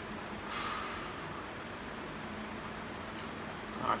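A person's short breathy exhale about half a second in, over steady low room hiss, with a brief faint hiss later and a spoken word just at the end.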